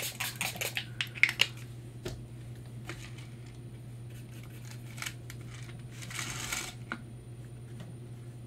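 Water spray bottle misting an acrylic painting palette to keep the paints moist: a quick run of short spritzes at the start and one longer spray about six seconds in. Light clicks of the sprayer and brush at the palette fall in between, over a steady low hum.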